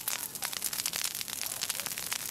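Dry shrubs and ferns burning in a peatland fire, crackling steadily with many sharp snaps.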